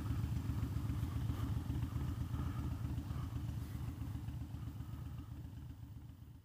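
A 2009 Harley-Davidson Dyna Fat Bob's air-cooled V-twin idling through Vance & Hines Short Shots exhaust, a steady low pulsing beat that slowly fades out.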